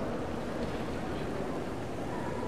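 Steady wash of running water from an indoor marble fountain, with a low murmur of people's voices.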